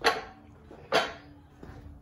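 Two short scuffing knocks about a second apart, each dying away quickly.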